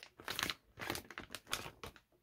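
Thin plastic bag crinkling in a run of short crackles as it is pulled open and a rubber-and-plastic dog chew toy is drawn out of it.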